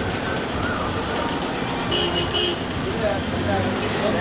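Road traffic noise with a car horn giving two short toots about two seconds in, and people's voices around it.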